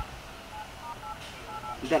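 Smartphone keypad tones as a phone number is dialled: a quick, uneven run of about six short two-note touch-tone beeps.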